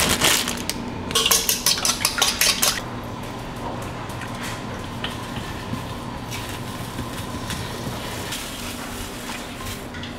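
Plastic tortilla bag crinkling and rustling for about two seconds near the start, the loudest part. Then a silicone spatula clicks and scrapes against a small frying pan, over a faint steady hum.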